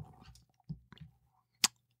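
A pause between spoken phrases: a few faint small noises, then a single sharp click near the end.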